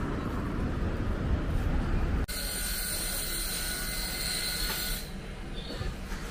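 Background noise with a low rumble, which cuts off abruptly about two seconds in. A steady high hiss with faint thin whining tones takes its place, then eases off about five seconds in.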